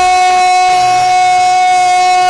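A man's amplified voice holding one long, steady high note on a "jai kara" devotional call.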